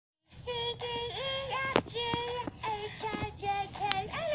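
Elmo toy's electronic voice playing through its small built-in speaker, a synthetic-sounding sing-song of flat, held notes with short breaks. Two sharp clicks cut through it, one just under halfway and one near the end.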